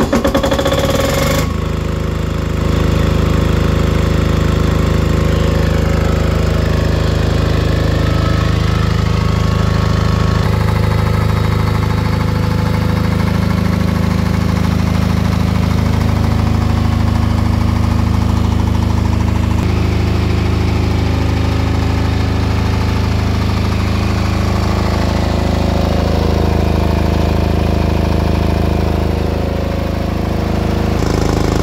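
Tsuzumi TDG10000SDV air-cooled diesel generator in its soundproof canopy, key-started and catching within the first second and a half, then running at a steady speed.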